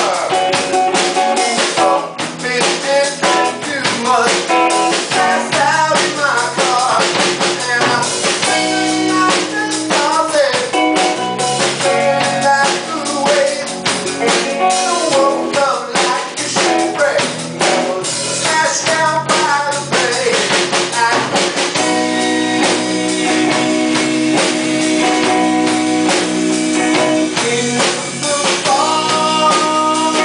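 Live rock trio playing a song: male lead vocal over a vintage electric guitar, bass and drum kit. In the last third the notes hold longer and steadier.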